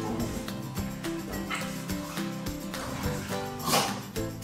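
A beagle barks, with one loud sharp bark near the end, over background music: an attention-seeking bark at the man it is pawing.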